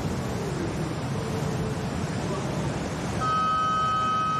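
Steady background rush, then about three seconds in a contest horn starts with one steady, held tone, signalling the end of the heat.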